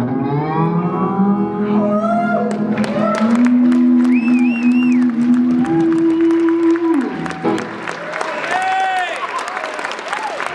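Electric guitar playing the final held notes of a song, bending up in pitch and then sustaining until it cuts off about seven seconds in, while a crowd applauds and cheers with whoops and whistles. The clapping begins about two and a half seconds in and carries on after the guitar stops.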